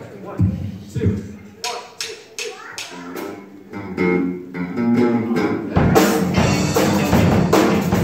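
Student rock band starting a song: scattered drum hits and a few held electric guitar notes, then about six seconds in the whole band comes in at once, with drum kit, electric guitars and bass playing together and louder.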